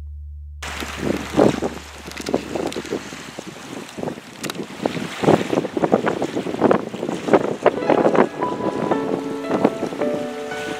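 Wind blowing across the microphone beside lake water, coming in suddenly about half a second in as uneven gusts and buffets. The last held note of a song fades out just before it.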